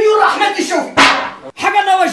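Loud, animated speech between characters, with a brief sharp noise burst about halfway through.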